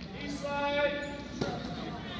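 A voice shouting one long drawn-out call from the sidelines of a wrestling bout, followed by a single sharp knock about halfway through.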